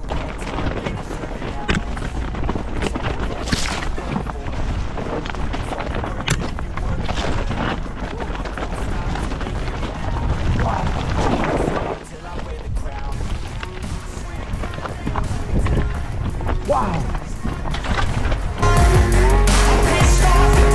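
Mountain bike riding over a loose rocky trail: uneven rattling and wind noise on the helmet microphone, under background music that gets louder near the end.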